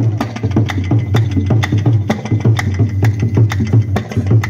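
Tabla drumming in a quick rhythm, with the deep bass drum sounding under the sharper strokes, and hand claps keeping time about twice a second.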